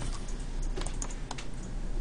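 About half a dozen irregular clicks from computer input, mouse buttons and keys, over a steady low hum.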